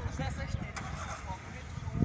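Indistinct voices of people talking in the background over a steady low rumbling noise of outdoor street ambience.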